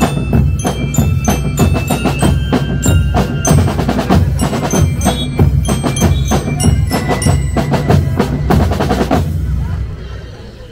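A marching percussion band plays drums and cymbals in a dense, driving beat, with bright, bell-like mallet notes ringing above them. The music stops about nine seconds in, leaving a short decaying ring.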